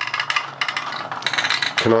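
A HexBug Nano robot bug buzzing while trapped inside the plastic toy lift, its vibrating legs making a fast, dry rattle against the plastic.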